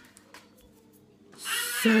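A short pause of quiet room tone, then near the end a woman's voice begins a drawn-out, emphatic word with a long hissing start.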